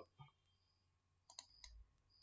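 Near silence with a few faint, brief clicks about one and a half seconds in, and a soft low thump under them.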